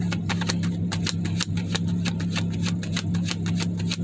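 Steady low hum of a car heard from inside the cabin, with rapid, irregular sharp clicks over it, several a second.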